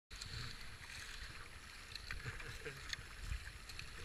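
Water splashing and gurgling around a racing kayak's paddle strokes and hull, with an irregular scatter of small splashes, over low wind rumble on the microphone.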